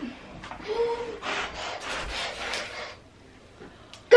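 Spinning prize wheel rasping and ticking as it turns, a dense run of rapid ticks that fades out about three seconds in as the wheel slows to a stop.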